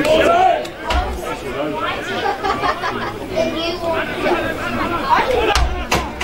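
Several people talking at once close to the microphone, overlapping voices with no one clearly heard. A couple of low bumps, about a second in and near the end.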